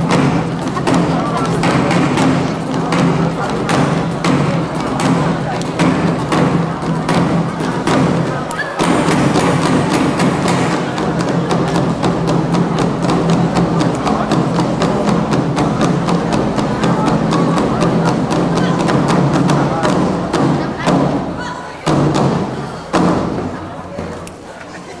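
Nanta ensemble drumming: rapid, dense stick strikes on barrel drums and two large drums on stands, over a steady backing music track. Near the end the dense playing drops away, leaving a few separate loud hits.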